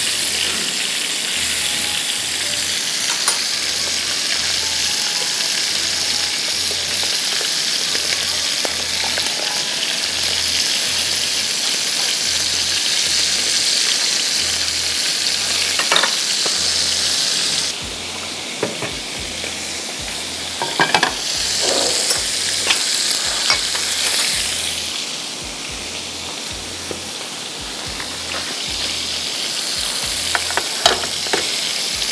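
Chicken pieces sizzling steadily as they sear in oil in a nonstick frying pan, with a few sharp clicks of metal tongs against the pan as the pieces are turned. The sizzle gets softer a little past halfway.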